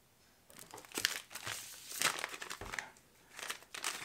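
Plastic soft-bait packs crinkling as they are handled and swapped in the hands. Irregular crackling starts about half a second in and dips briefly around the three-second mark.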